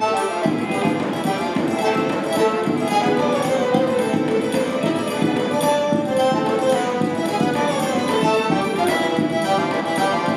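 Live instrumental forró played by a string quartet with violins, viola and cello together with hand percussion, a steady danceable beat under the bowed melody.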